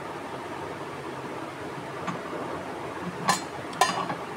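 Two sharp metallic clinks about half a second apart near the end, as the kneader's metal blade is set onto the shaft inside the stainless steel bowl, over a steady background hum.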